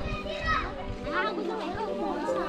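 Young children's high voices calling and chattering over a background music track.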